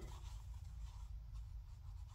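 Faint rubbing and scratching of plush blanket yarn being worked on a metal crochet hook, over a steady low hum.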